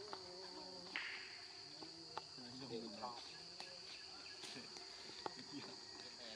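Steady high-pitched drone of forest insects, a continuous buzzing band, with faint scattered clicks and a brief hiss about a second in.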